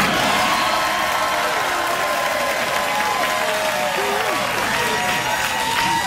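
Studio audience applauding and cheering steadily, with scattered whoops.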